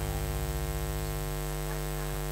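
Steady electrical mains hum through the karaoke sound system, a buzz made of many evenly spaced tones.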